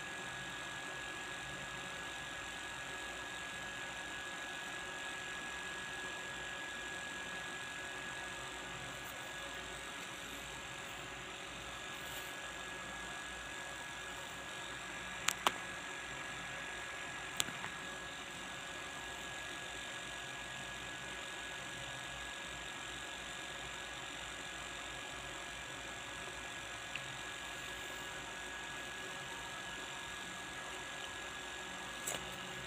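Steady background hum and hiss with a thin, high, constant whine, broken by a pair of sharp clicks about fifteen seconds in and another click about two seconds later.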